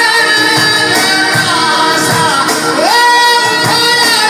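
Live Albanian folk music: a male singer on a microphone over Korg keyboard accompaniment with a steady beat, one note rising and then held about three seconds in.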